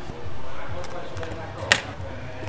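A large sheet of vinyl wrap film rustling as it is lifted and pulled by hand, with one sharp click near the end.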